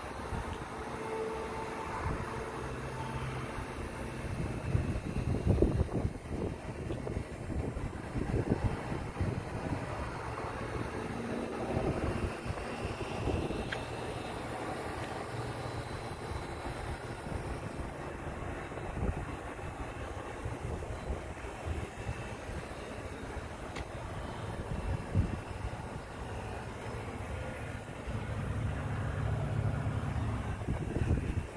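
A motor vehicle's low, steady drone, with irregular low rumbles and thumps over it.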